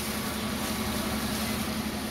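A heavy engine running steadily under a constant hiss of water spraying from a fire hose.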